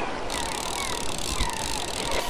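Gulls calling: a string of short, falling cries, over a steady rushing noise that grows louder about a quarter second in.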